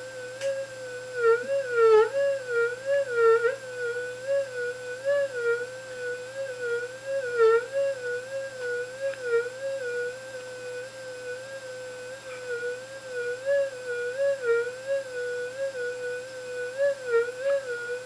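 Minelab SD2200 V2 pulse-induction gold detector's audio tone: a steady hum that wobbles up and down in pitch about twice a second, rising and dipping as a gold ring is held at different heights over the search coil. The detector is signalling the ring.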